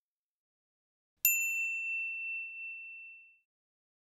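A single high, bell-like ding about a second in, ringing out and fading away over about two seconds.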